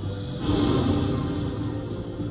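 Video slot machine's game music with chiming effects, swelling louder about half a second in as a bonus is collected on screen.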